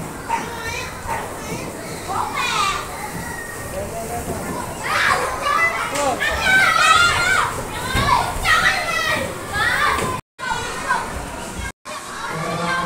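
Children playing and calling out in high voices, the shouts getting busier about halfway through. The sound cuts out briefly twice near the end.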